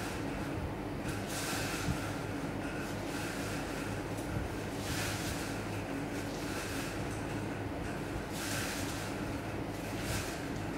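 Four strands of thin jute twine rasping as they are drawn taut and wound around a paper Maltese firework shell, a brief swish every few seconds, over a steady low hum.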